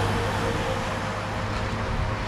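Steady engine rumble with a strong low hum and a faint higher tone that comes and goes.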